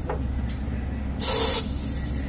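A short, loud burst of compressed-air hiss about a second in, lasting under half a second, as an air chuck feeds air into the fill valve of a truck's towing airbag. A low steady hum sits underneath and stops near the end.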